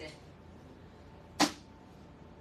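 A single sharp click about one and a half seconds in: a carrycot's frame bar snapping into its clip underneath, locking the carrycot into shape.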